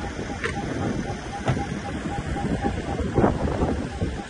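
Wind buffeting the microphone over car engines running at low speed, with a few short knocks and some voices.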